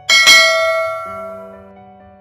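Notification-bell sound effect struck once just after the start, ringing with many overtones and fading away over about a second and a half, over background music.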